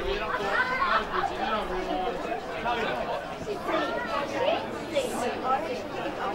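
Several people's voices chattering and calling over one another, with no single voice or word standing out.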